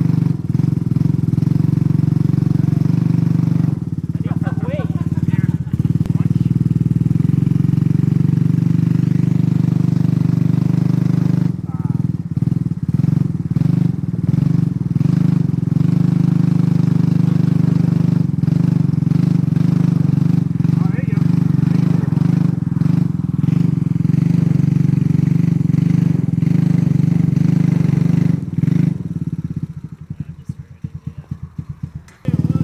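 Quad ATV's small engine running steadily while towing a car off a trailer by strap. Near the end it drops back to a lower, pulsing idle.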